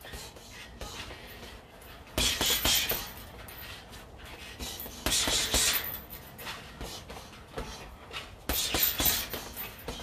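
Three bursts of quick punching, one about every three seconds. Each burst is a fast hook–uppercut–uppercut combination of several sharp strikes with hissed breaths, about a second long.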